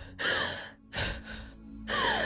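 A woman sobbing: two breathy, gasping sobs, the first with a short falling whimper, over a low, steady music bed.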